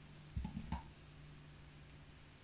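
Two soft, short knocks of small craft supplies being handled on a tabletop, about half a second and three quarters of a second in, over a faint steady low hum.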